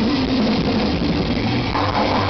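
Black metal band playing live at full volume: heavily distorted electric guitars over fast drumming, a dense, unbroken wall of sound that grows brighter near the end.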